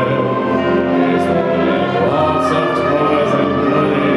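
High school concert band of brass and woodwinds playing a slow passage of long, sustained chords.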